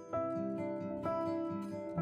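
Background music: acoustic guitar picking steady notes.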